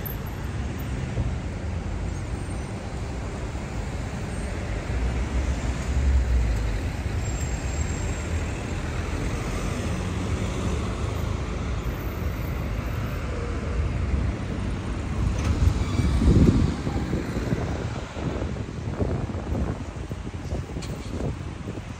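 Steady road traffic noise from cars, vans and buses running through a busy roundabout, swelling louder twice, about six seconds in and again around sixteen seconds in.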